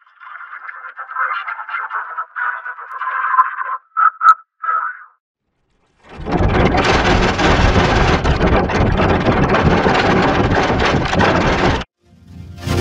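Heavily processed, distorted logo-jingle audio. For about five seconds it is a thin, choppy, band-limited sound like a tinny radio, ending in a few short blips. After a second of silence comes a loud, dense wall of distorted noise that cuts off suddenly near the end.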